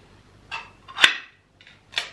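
Ring-pull food tin being opened by hand: a small click as the tab is lifted, a loud crack about a second in as the tab breaks the seal, then a brief peel and a final snap near the end as the metal lid comes free.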